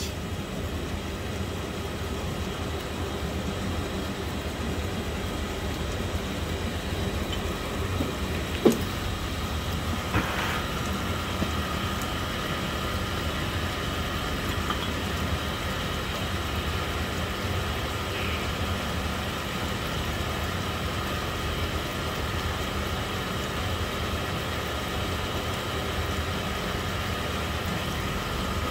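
A Sunnen honing machine running steadily, its motor giving an even hum with a faint whine; a couple of light knocks about nine seconds in.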